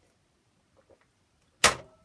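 A drinking glass set down on a hard desk: one sudden sharp knock about one and a half seconds in, with a brief ring after it.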